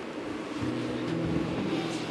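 Background film score: low, sustained synth notes held as a soft chord, with a deeper note coming in about half a second in.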